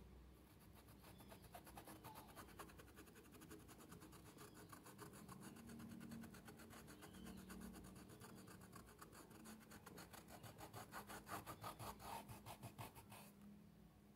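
Stiff round paintbrush scrubbing fabric paint into cloth in rapid, regular strokes, several a second: bristles rubbing on the fabric while shading and blending the paint with thinner. It grows louder near the end and stops about a second before it.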